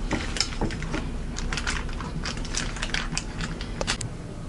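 Clear plastic piping bag crinkling and clicking in quick, irregular crackles as it is handled and filled with thick chocolate and dulce de leche cream scooped from a bowl.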